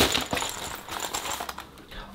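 Plastic packaging crinkling and rustling as items are handled and pulled from a box, opening with one sharp click.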